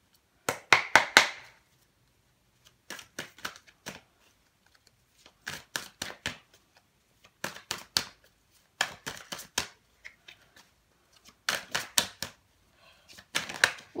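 A deck of Arthurian oracle cards being shuffled by hand: short bursts of crisp card snaps and flutters, about seven of them, one every second or two.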